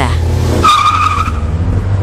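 Car sound effect: engine rumble with tyres squealing as the car swings through a sharp turn. The squeal is a high, steady screech lasting just under a second, in the middle.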